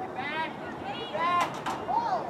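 High-pitched shouting and yelling voices during the soccer match, with three sharp knocks about a second and a half in.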